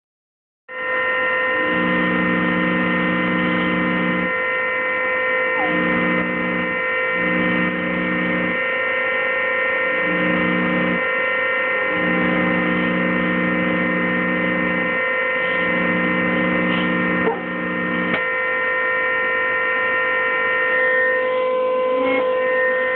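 Small keyboard organ sounding a steady held chord of several tones, starting about a second in, while a lower chord of notes comes in and cuts out about six times as keys are pressed and let go.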